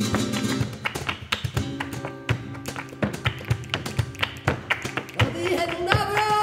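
Flamenco soleá: Spanish guitar chords and picking over a run of sharp percussive taps. A singing voice comes in near the end.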